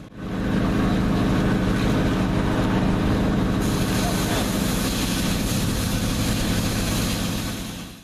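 A fire engine's motor running steadily while it pumps water, under the hiss of a fire hose spraying; a higher hiss joins about three and a half seconds in, and the sound fades out at the end.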